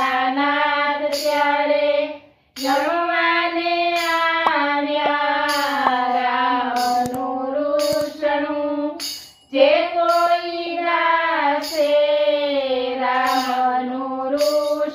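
Women's voices singing a Gujarati devotional bhajan together on one melody line, with short pauses for breath about two seconds in and again about nine seconds in.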